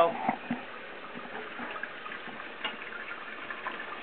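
Liquid running steadily into a stainless steel kitchen sink, with a few faint clicks.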